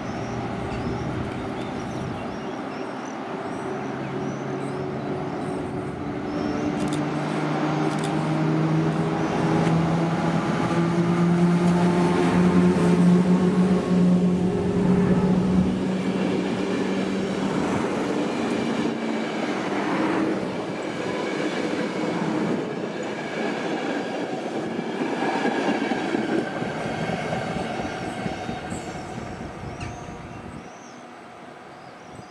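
EP09 electric locomotive accelerating out of the station and passing close, its motor hum rising in pitch and loudest as it passes about twelve seconds in. Then the passenger coaches roll past with wheel noise and rail clicks, fading as the train pulls away at the end.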